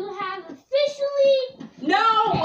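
A child's voice singing: a short sung note, then a single held note lasting nearly a second, and another sung phrase starting near the end.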